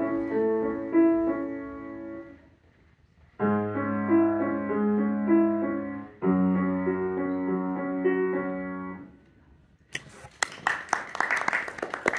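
Grand piano played in slow, held chords, in three phrases: the first dies away, then after about a second's pause a new phrase begins, followed by another that rings out and fades about three-quarters of the way through. Near the end comes a spell of short, sharp, irregular noises.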